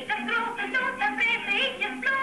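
A voice singing with quick jumps in pitch, over music.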